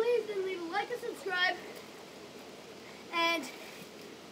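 Short, unclear calls from a child's voice: a run of rising and falling calls in the first second and a half, then a short held call about three seconds in.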